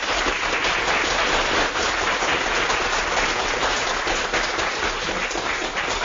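Audience applauding steadily in a small room.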